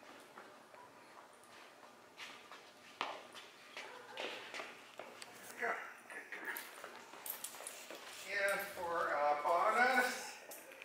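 Footsteps and scattered light clicks as a handler and small dog walk on rubber floor matting. Near the end a louder voice-like sound rises and falls in pitch.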